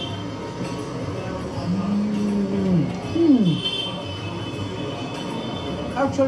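A man hums a long, level 'mmm' of enjoyment while chewing a mouthful of food, then a shorter 'mm' that falls in pitch. Soft background music plays throughout.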